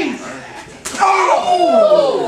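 A single sharp slap of a wrestling strike just under a second in, followed at once by loud yelling voices.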